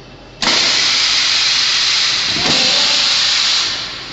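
Compressed air hissing from a pneumatic chisel mortiser. It starts suddenly about half a second in, holds steady for about three seconds, then dies down near the end.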